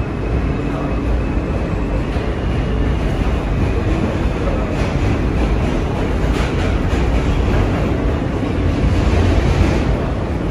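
Steady rumble and wheel-on-rail noise of a New York City subway car in motion, heard from inside the passenger cabin. It grows slightly louder toward the end, with a few faint clacks around the middle.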